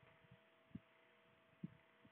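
Near silence: room tone with a faint steady electrical hum and two soft low thumps about a second apart.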